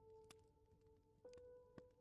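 Quiet, soft background music of long held tones, a new note coming in about a second in, with a few faint crackles of a fireplace ambience over it.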